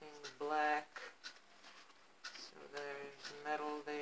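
A woman's voice making several drawn-out wordless "ooh" sounds of delight, with a few faint clicks between them.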